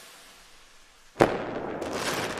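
Logo-reveal sound effect: the fading tail of a whoosh, then about a second in a sudden hard hit followed by a crackling, hissing tail that slowly dies away.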